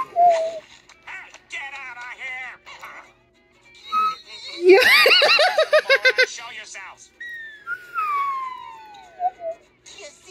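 Slide whistle notes sliding in pitch: a short falling slide at the very start, wavering notes a couple of seconds in, and one long slide falling from high to low over the last few seconds. About five seconds in comes a loud, high, warbling burst.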